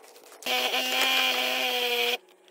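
A power tool's motor running at a steady pitch for about a second and a half, starting and stopping abruptly.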